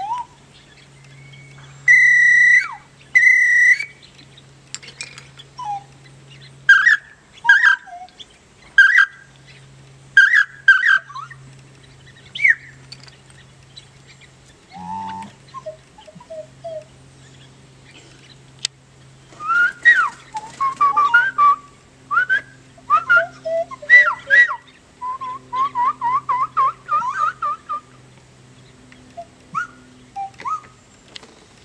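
Bird-call whistles blown one after another, imitating birdsong: two long steady whistle tones about two seconds in, then short chirps and slurred notes, a dense burst of calls around the twenty-second mark, and a quick run of repeated chirps near the end. A low steady hum runs underneath.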